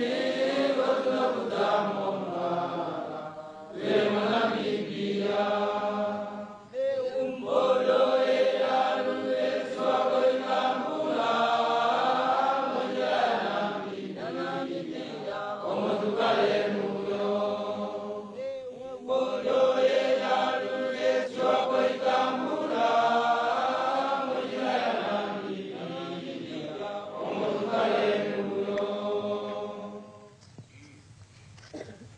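A group of voices chanting together in unison, in phrases a few seconds long with short breaks between them.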